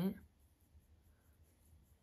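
A voice trails off at the very start, then near silence: quiet room tone.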